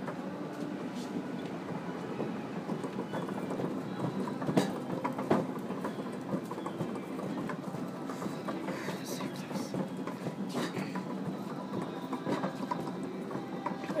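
Warehouse store ambience while walking down an aisle: a steady din with scattered clicks and knocks, including a few sharper ones, and faint background voices.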